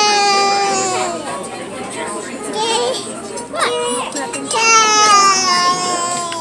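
A high-pitched voice wailing in two long, slowly falling notes, one at the start and another about four and a half seconds in, with brief voices between.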